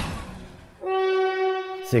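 A whoosh fading out, then one steady horn blast held for about a second: a battle horn sounding the signal for the attack.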